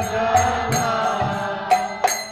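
Devotional mantra chanting with small brass hand cymbals (kartals) struck about twice a second, each strike ringing briefly.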